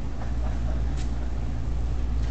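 Steady low engine rumble of street traffic, with one short click about a second in.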